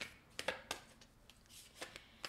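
Faint, light flicks and snaps of an oracle card deck being shuffled by hand, a few soft clicks spread across the moment.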